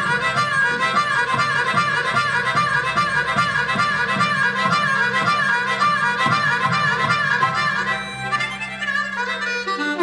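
Blues harmonica played cupped into a hand-held microphone, running a fast repeated riff over the band's accompaniment. The accompaniment drops away near the end.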